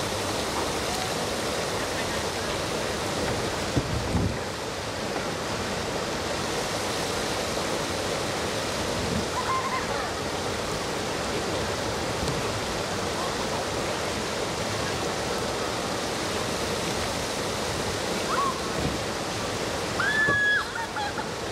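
Steady rushing of river water pouring over a rock ledge into a small rapid, with a brief thump about four seconds in.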